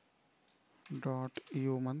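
A few keystrokes on a computer keyboard as code is typed, then a man's voice speaking from about a second in, louder than the keys.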